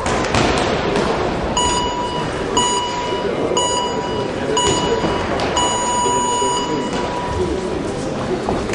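Electronic boxing timer signal: four short beeps about a second apart, then one long beep of about a second and a half. It counts down the last seconds of the rest and marks the start of the next round. Hall chatter runs under it.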